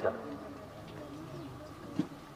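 A pause in amplified speech: faint background with a soft, low bird call in the middle, and a short click near the end.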